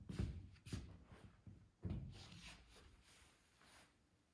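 Soft footsteps on a stage floor, then a cane-seated tubular steel chair being moved and sat on: a few faint thumps, then a quieter rustle as the man settles.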